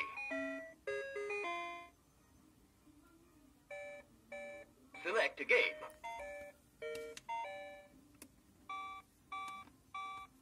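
Electronic beep tones from an Oregon Scientific Star Wars Clone Wars toy laptop: a quick tune of short beeped notes over the first two seconds, then after a short pause more groups of short beeps, broken about five seconds in by a brief burst of the toy's electronic voice.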